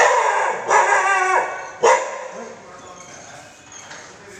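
A dog barking three times in the first two seconds: two drawn-out barks, then a short sharp one.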